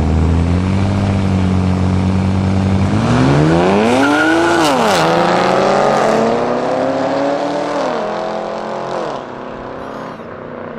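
A Chevrolet Camaro and a BMW 1 Series coupe launching from a standing start in a street drag race. The engines are held steady at first. About three seconds in they pull hard, and the engine pitch climbs, drops at each upshift, and climbs again through about four gears as the cars fade into the distance.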